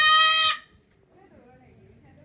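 A white cockatoo giving a loud, drawn-out screech that cuts off about half a second in.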